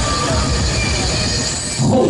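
Loud, steady din of a large event hall: audience noise mixed with music over the PA.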